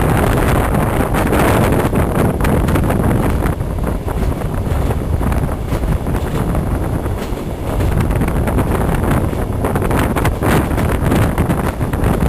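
Steady rushing run of a Trans-Siberian passenger train heard from inside the carriage, with wind buffeting the microphone. It dips a little in the middle, then comes back up.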